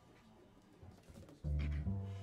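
A jazz band starts playing after a quiet stretch: loud, sustained low upright-bass notes with the band come in abruptly about one and a half seconds in.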